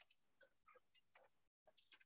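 Near silence, with a few faint, short ticks.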